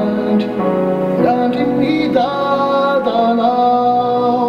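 A man singing a slow song into a microphone with long held notes, accompanied by an electronic keyboard.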